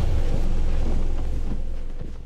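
A low, steady rumble that fades out near the end: the decaying tail of the trailer's closing music.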